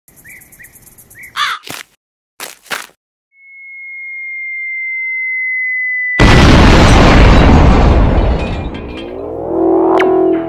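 Cartoon sound effects: a bird chirping, then two short harsh caws, then a whistle that grows louder and sags slightly in pitch for about three seconds, like a falling bomb, cut off by a loud explosion that slowly fades. Near the end rising tones sweep up into electric guitar chords.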